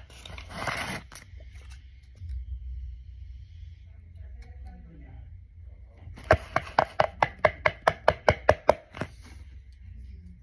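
A crinkle of paper in the first second, then, a little past halfway, a quick run of sharp taps, about five or six a second for two to three seconds, as a marker is dabbed against paper on a hard surface.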